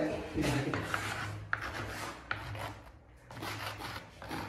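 A hand-held stone scratching letters into a plastered wall, in a run of short scraping strokes with a brief pause near three seconds.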